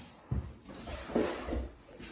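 Quiet room tone broken by a couple of soft low thumps, and a brief hesitant hum from a man's voice about a second in.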